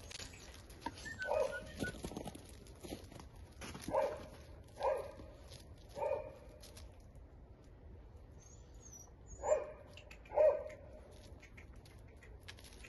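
Puppies barking in short single yips, about six spread over the stretch, with the last two close together near the end.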